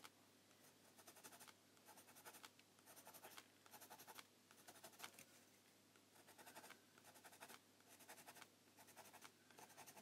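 Faint scratching of a Faber-Castell Pitt pencil on a watercolour-painted sketchbook page. The pencil makes rapid short strokes in bursts of about half a second to a second, with brief pauses between them.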